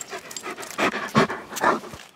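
A dog panting close by, with three quick breaths about half a second apart in the second half.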